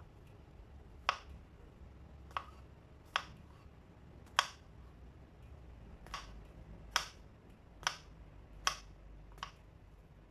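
Kitchen knife chopping mushrooms on a plastic cutting board: about nine sharp taps of the blade on the board, unevenly spaced and coming closer together in the second half.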